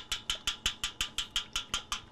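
A tiny wire whisk beating raw eggs in a large stainless steel bowl, making a rapid, even clicking at about six strokes a second.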